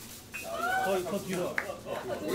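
A person's voice making a high, wavering, drawn-out sound in the middle of casual chatter, with a short sharp click about one and a half seconds in.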